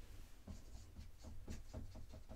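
Dry-erase marker writing on a whiteboard: a string of faint, short strokes of the felt tip on the board.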